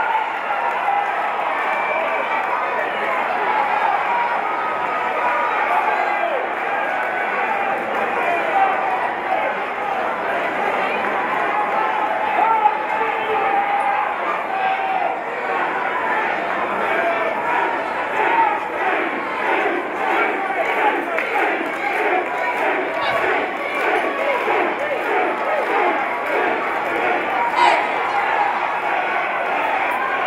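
Boxing crowd shouting and cheering: a steady, dense hubbub of many voices, with a few faint sharp knocks.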